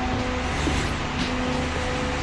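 A steady low mechanical hum with a few held tones over an even background hiss.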